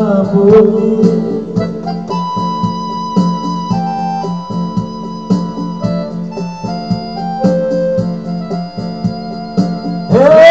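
Instrumental break in a song: an electronic keyboard plays a melody in held, organ-like notes over a steady programmed beat.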